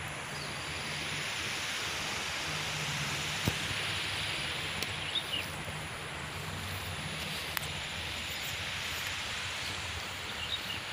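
Rural outdoor ambience: a steady hiss with a faint low hum underneath, a few brief high chirps about five seconds in, and a couple of short clicks.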